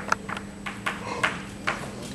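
Chalk striking and writing on a blackboard: a run of about seven sharp, irregular taps as a short word is written.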